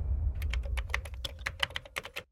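Quick run of computer-keyboard typing clicks, about eight to ten keystrokes a second, a typing sound effect for the title card, over a low rumble that fades out.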